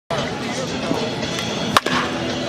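A baseball bat striking a pitched ball once near the end, a single sharp crack, over background voices and music.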